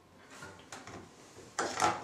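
A few soft knocks and rustles of a person moving about with an acoustic guitar, the loudest cluster near the end.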